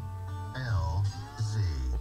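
Music from the car radio playing through the Burmester sound system inside the car's cabin.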